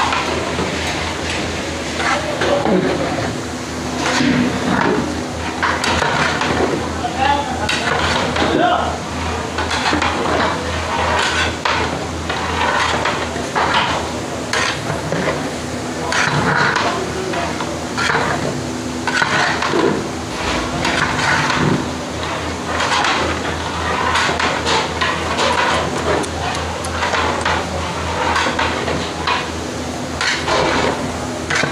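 Long metal stirring paddle scraping and clanking against the sides and bottom of a large aluminium cooking pot as a big batch of diced potatoes and radish pods is stirred, over a steady low hum.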